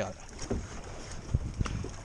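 A canoe being paddled: paddle strokes in the water and a few low thumps on the hull, one about half a second in and two around a second and a half.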